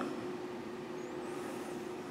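Quiet room tone: a steady hum under a faint hiss, with a faint high whistle gliding up and down about a second in.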